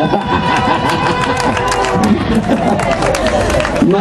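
Loud amplified live band music with electric guitar, a note held for the first two seconds or so and then a dense run of sharp strikes, mixed with crowd voices.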